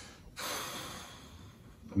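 A person's long, breathy exhale, a sigh of disapproval, starting about half a second in and fading away over a second or so.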